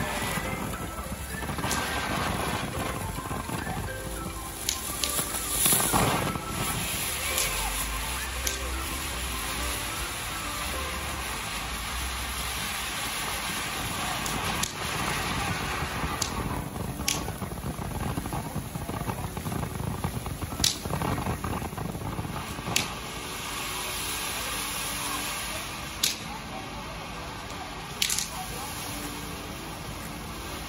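Ground fountain firework (a 'fire pot' or flower pot) hissing steadily as it sprays sparks, with several sharp crackling pops scattered through it, over background music.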